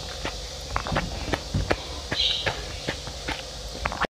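Close-miked chewing of a mouthful of basil seed ice: irregular small crunches and wet clicks.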